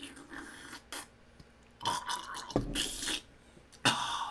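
A man sipping noisily from a mug, then a short burp.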